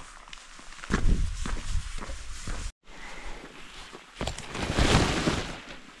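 Hikers' footsteps on a mountain trail, with scuffs and rustling of clothing and packs. The sound drops out briefly near the middle, and a louder rushing noise rises and falls near the end.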